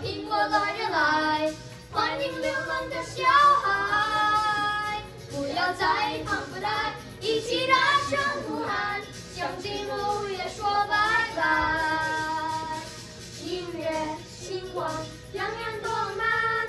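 Boys' voices singing a Mandarin pop song into microphones through a sound system, with a backing track playing under the singing.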